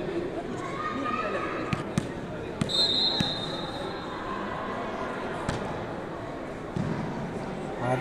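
Indistinct voices of players and spectators echoing in a gymnasium, with a few sharp bounces of the ecuavoley ball on the wooden court floor. About three seconds in there is a short, high, steady whistle.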